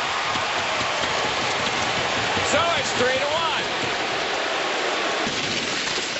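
Hockey arena crowd noise, a steady dense roar, with a brief voice about halfway through. The sound changes abruptly near the end where the broadcast cuts.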